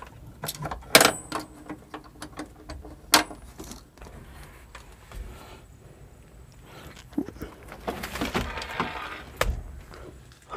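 Sharp metallic clicks as the driver's seat locks of a Maruti Suzuki Super Carry mini truck are released by their lever, the loudest about one and three seconds in. Smaller rattles follow, with a clunk near the end as the seat tilts up over the engine.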